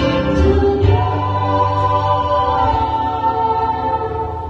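Mixed vocal group of men and women singing in harmony through handheld microphones. About a second in they move to a new chord and hold it.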